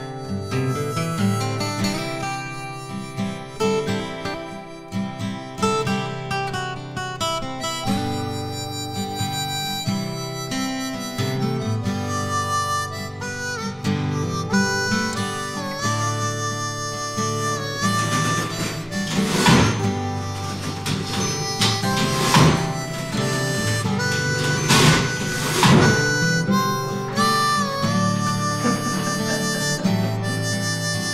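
Harmonica music over acoustic guitar accompaniment, the harmonica's held notes sliding in pitch. There are a few louder accents in the second half.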